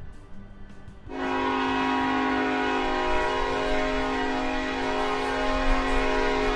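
Steam locomotive whistle sounding one long, steady blast that starts about a second in.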